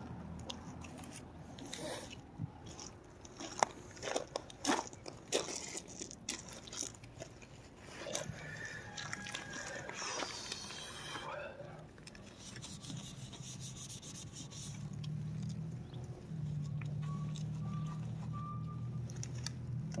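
Scattered light knocks, rubs and clicks from handling the phone while filming, then a low steady hum in the last few seconds.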